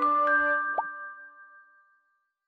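Short musical logo jingle: bright, struck bell-like notes ringing out together, a quick rising pop about three-quarters of a second in, then the last chord fades away to silence.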